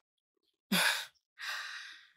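A woman's breathy exhalations: a short voiced huff about two-thirds of a second in, then a longer sigh that fades away near the end.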